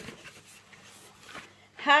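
Faint rubbing and scraping of cardboard packaging being handled, a few light scrapes at the start and another about a second and a half in.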